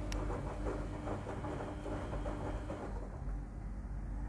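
Samsung front-load washing machine starting its wash cycle: a single sharp click right at the start, then a steady low hum with faint irregular noises over it.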